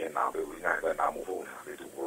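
A man's speech over a telephone line, the voice thin and narrow with little above the mid-range.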